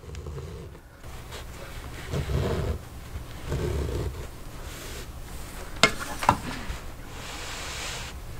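Hands rubbing and finger-pressing cotton quilting fabric against a table, in two short stretches of low rubbing. Two sharp clicks follow about six seconds in, and a soft hiss comes near the end.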